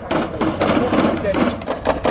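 Hard little caster wheels of a dolly rattling fast over brick paving, with the plastic beer crates stacked on it shaking and rattling.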